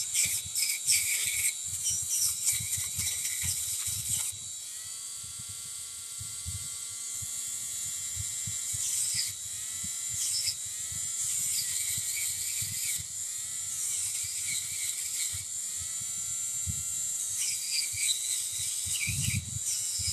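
Handheld rotary tool spinning a blue polishing wheel against copper wire on a wire-wrapped pendant: a steady high motor whine with scratchy rasping as the wheel rubs the wire, more broken up in the first few seconds.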